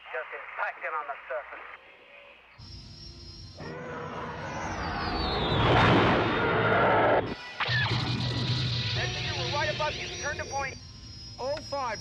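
A TIE fighter's engine howl in the film's sound mix: it swells to the loudest point, with a high falling glide, then cuts off abruptly a little past halfway. Orchestral score plays under it, and brief dialogue comes before and after.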